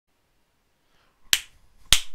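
Two sharp snaps out of silence, the first about a second and a quarter in and the second about half a second later.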